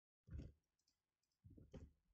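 Two faint computer-keyboard clicks, one early and one near the end, made while typing into an equation, otherwise near silence.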